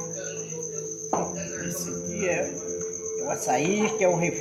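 Crickets chirring steadily in a continuous, pulsing high-pitched trill, with a single sharp knock about a second in.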